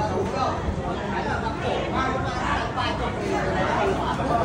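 Chatter of several people talking at once, their conversations overlapping without a break.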